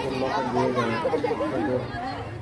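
Schoolchildren's voices, several talking and calling out at once.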